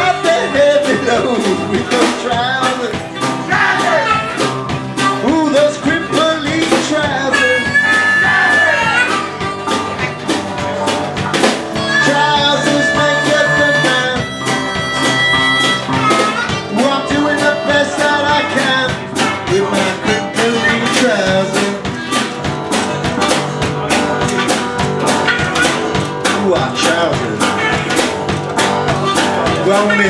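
Live band playing an instrumental break: acoustic guitar with a steady beat from drums and washboard, and held lead notes in the middle.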